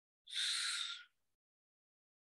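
A short breathy hiss from a man's mouth, under a second long, starting about a quarter of a second in.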